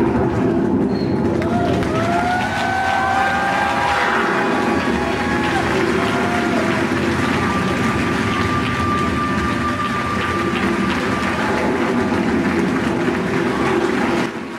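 Audience applauding and cheering, with a few long whoops a couple of seconds in.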